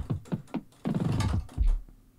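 A kick drum one-shot sample triggered several times in quick succession in a software sampler while it is transposed up in pitch. Each hit is a short thump that drops quickly in pitch, and a deeper kick sounds near the end.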